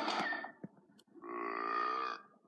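Music trails off at the start, then about a second in a cartoon character's voice makes one held, pitched, wordless sound lasting a little under a second.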